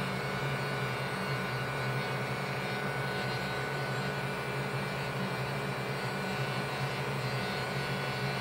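Electric heat gun running steadily, a constant whir and rush of air, played over acrylic paint on a plastic gauntlet to make the paint bubble up into a rough texture.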